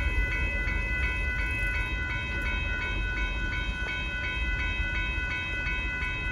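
Railroad grade-crossing bell ringing in a quick steady rhythm of about three strokes a second, over the low rumble of a Union Pacific freight train.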